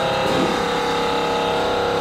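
Air-ride suspension on a custom Volkswagen Corrado G60 inflating to raise the car from its lowest setting: a steady hiss with a constant hum underneath.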